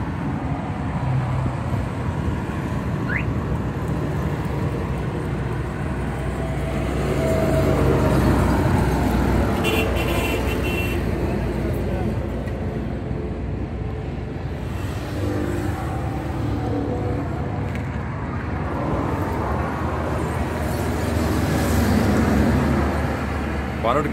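Suzuki Mehran's 796 cc three-cylinder engine idling steadily under the open bonnet, a constant low rumble, with faint voices talking in the background.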